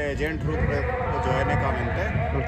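A man speaking, his voice rising and falling in pitch.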